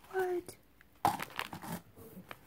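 Packaging crinkling and rustling for under a second as items are pulled out and set down, about a second in. It follows a brief hummed vocal sound near the start.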